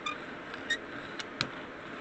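Hand brayer rolling black paint across a gel printing plate: a faint steady hiss with a few short clicks scattered through it.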